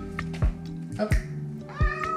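A cat meowing, about a second in and again near the end, begging for food as its owner prepares its meal. Background music with a regular thumping beat plays throughout.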